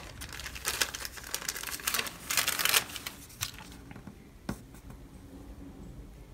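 Paper stickers and sticker sheets being handled, rustling and crinkling, busiest in the first three seconds. A single sharp tap comes about four and a half seconds in.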